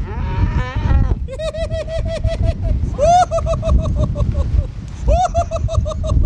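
A calf bawling in a string of long, wavering calls that pulse several times a second, with low wind rumble on the microphone underneath.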